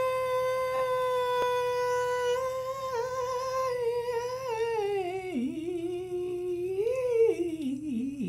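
A man's voice holding one long high vocal note, steady for about two and a half seconds, then wavering and sliding down in pitch with dips and rises.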